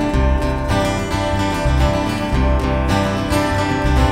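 Instrumental intro of a folk song: an acoustic guitar strummed steadily, with an electric bass guitar playing low notes underneath.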